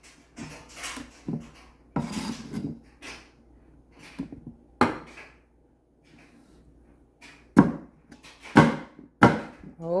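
Chef's knife chopping peeled cassava root on a wooden cutting board: about ten irregular chops with pauses between, the loudest three in the last few seconds.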